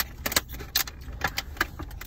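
Irregular clicks and crackles from a plastic drink bottle while someone drinks from it, over the low steady rumble of a car interior.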